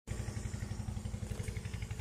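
A small engine running steadily with a fast, even chug.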